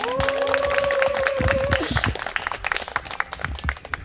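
Audience applause, dense at first and thinning out toward the end, with a long held note sounding over the first two seconds.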